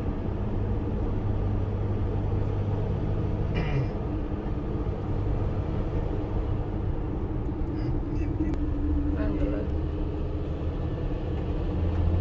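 Steady low drone of road and engine noise inside a moving car's cabin. Its pitch drops slightly about eight seconds in.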